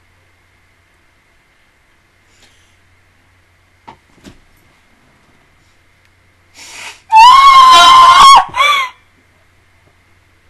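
A woman's high-pitched shriek, loud enough to clip, held steady for just over a second after a sharp breath in, followed at once by a second, shorter cry that rises and falls.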